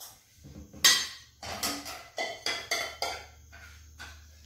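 Metal spoon knocking and scraping against a small pan and a stainless steel mixing bowl: a series of about six clinks and knocks, the first, about a second in, the loudest.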